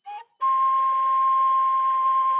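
Background flute music: a brief note, then one long held note.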